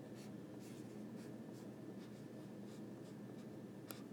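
Faint stylus strokes on an iPad's glass screen during handwriting: a run of short scratches, with a sharper tap near the end.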